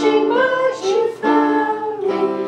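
Singing to a Yamaha electronic keyboard: held keyboard chords under a sung melody that slides between notes.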